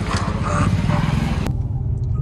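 Outdoor open-air noise with faint voices. About one and a half seconds in, it cuts abruptly to a steady low drone inside the cabin of a Mercedes-AMG A35 under way, from its engine and the road.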